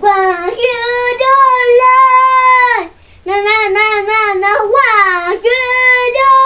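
Young boy singing loudly in a rock style with no accompaniment, holding long notes. A short break comes about halfway through, then he launches into the next phrases.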